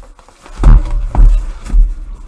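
Three heavy thumps about half a second apart as a cardboard case of hobby boxes is handled and boxes are pulled out of it, loud against the microphone.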